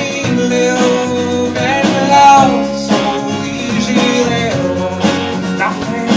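A live band playing: strummed acoustic guitar, electric guitar, bass guitar and keyboard. A lead melody line bends in pitch and is loudest a little over two seconds in.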